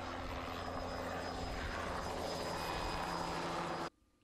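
Bell 206B-3 JetRanger helicopter in flight, its engine and rotor running steadily. The sound cuts off abruptly just before the end.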